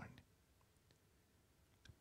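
Near silence: room tone, with a couple of faint clicks near the end.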